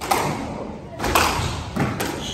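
Squash ball struck by rackets and hitting the court walls during a rally: three sharp knocks, the first two about a second apart, echoing in the court.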